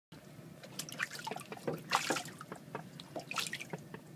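Water splashing and dripping in a utility sink as two ten-week-old ducks swim and paddle in it: short irregular splashes, loudest about two seconds in and again about three and a half seconds in.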